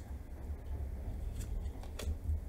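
Tarot cards being dealt onto a wooden table: a few light clicks and slides of card on wood, over a low steady hum.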